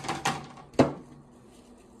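Three clacks of hard plastic being handled and set down: one at the start, another a quarter second later, and the loudest and sharpest just under a second in.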